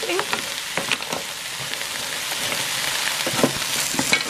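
Frozen mixed vegetables sizzling steadily in a hot electric skillet while a wooden spatula stirs them, with a few scrapes and taps of the spatula against the pan.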